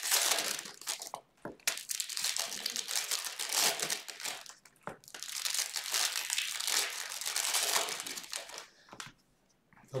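Foil wrappers of Topps Bowman Draft Jumbo card packs crinkling as they are handled and torn open by hand, in three long bursts with short breaks.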